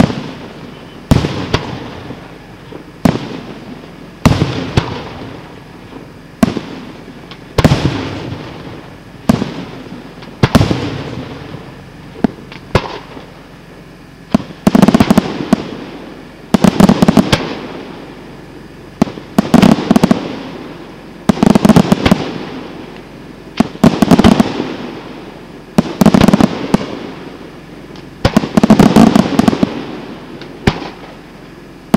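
Aerial firework shells bursting in a steady sequence: single sharp bangs about one every second and a half at first, then from about halfway each burst a quick volley of rapid cracks, every couple of seconds.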